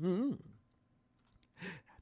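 A man's voice trails off at the end of a spoken phrase, then a short pause, then a brief soft sigh-like vocal sound shortly before speech resumes.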